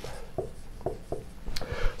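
Marker pen writing on a whiteboard: a series of short, separate strokes as letters are drawn.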